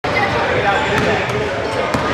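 A basketball bouncing on a hardwood gym floor, a few sharp thumps, over the steady chatter of voices in the gym.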